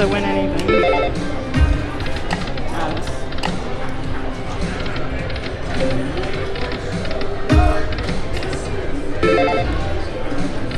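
Aristocrat Dragon Link 'Peace & Long Life' video slot machine playing its electronic chimes and jingles as the reels spin and land, with a couple of low thuds along the way, over casino background noise.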